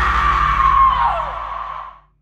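A long high-pitched scream held on one note, sagging in pitch and fading out near the end, over a low, steady musical drone.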